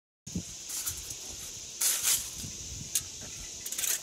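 Aluminum foil crinkling in a few short bursts as a strip is handled around a squash stem, loudest about two seconds in, over a steady high hiss.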